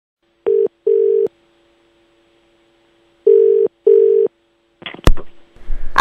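Telephone ringing tone heard down the line in the double-ring pattern, two short rings close together, sounding twice about three seconds apart. A sharp click near the end marks the call being picked up, and a voice starts right after.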